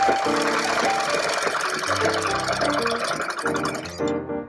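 Sewing machine stitching cotton fabric at speed, a rapid, even clatter of needle strokes that stops abruptly at the end, over background piano music.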